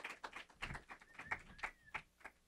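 Light audience applause: many quick, irregular hand claps.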